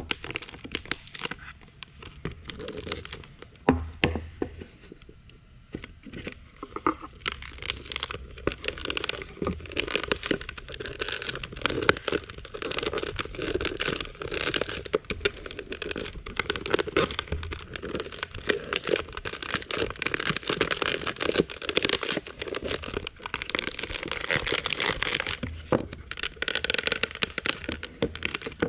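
Plastic mixing bucket squeezed and flexed by hand, the cured epoxy lining inside cracking and releasing from the walls and bottom: a dense, uneven run of crackles, crinkles and small snaps, easing off briefly about four to six seconds in.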